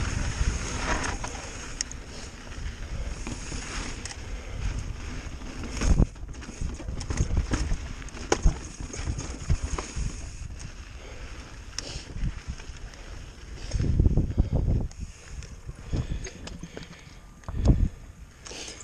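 Pivot Firebird mountain bike descending rocky dirt singletrack: tyres crunching and rolling over dirt and rock, with frequent short knocks and rattles from the bike. Heavier low rumbles about six seconds in, around fourteen seconds and just before the end.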